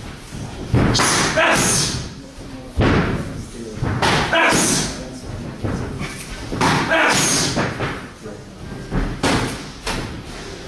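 Kicks and knee strikes landing on leather Thai kick pads: about five heavy slapping thuds, spaced one to three seconds apart, each with a short hall echo.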